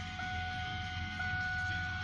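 Steady electronic tone restarting about once a second, over a low steady hum.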